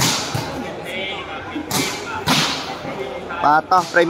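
A volleyball struck sharply by hand three times, once at the start and twice more about two seconds in, over a steady murmur of crowd chatter.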